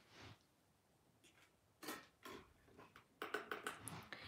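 Near silence, broken by a few faint short taps and clicks, with a quick run of them in the last second.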